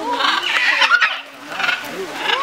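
Macaws squawking harshly: a loud, raucous burst of calls through the first second and a shorter one near the end.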